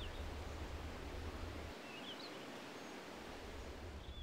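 Faint outdoor ambience: a steady hiss with a few short bird chirps, and a low rumble that drops away a little before halfway.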